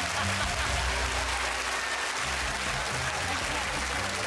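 Studio audience laughing and applauding, with music playing underneath.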